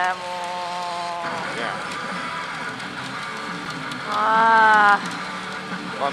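Pachinko machine music and sound effects over the constant din of a pachinko parlour, with two long held, voice-like tones: one at the start that stops about a second in, and a louder one around four seconds in.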